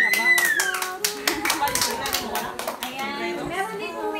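A short burst of fast hand clapping, dense for about the first two seconds, with voices and a high rising-and-falling whoop at the start.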